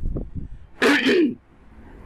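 A man sneezing once, a short loud burst about a second in.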